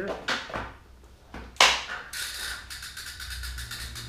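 Knocks and clicks of a rider getting onto a road bike on a Tacx Vortex wheel-on trainer: a few light clicks, one sharp knock about a second and a half in, then a quick run of ticks from the drivetrain that fades out.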